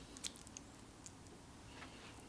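Faint wet clicks and squishes of a silicone basting brush working a miso paste and olive oil mixture onto raw aubergine wedges. A few sharp little clicks come in the first half-second and a softer one near the end.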